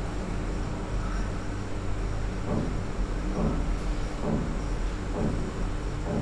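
Room tone in a classroom during a pause in speech: a steady low electrical hum, with a few faint, indistinct murmurs.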